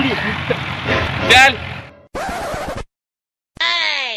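Men's voices calling out, with a loud shout about a second and a half in, over splashing of feet wading into shallow river water. Then come abrupt edited cuts to silence, a short noisy burst, and a quick falling-pitch sound effect near the end.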